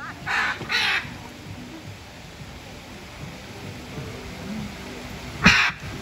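Hyacinth macaw squawking: two harsh calls in quick succession just after the start, then a third, louder one about five and a half seconds in.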